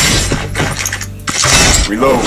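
Fight sound effects from an animated action trailer: a run of sharp crashing, shattering impacts, with a short lull just past a second in and then louder crashes.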